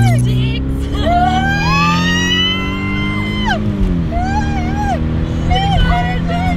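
A voice holds one long note that rises, holds and then falls, followed by shorter wavering notes, over the steady rumble of a car driving with wind noise. A short low buzz sounds right at the start.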